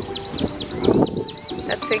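A bird calling in a rapid, even series of short high chirps, about five a second, each note dropping in pitch, stopping near the end.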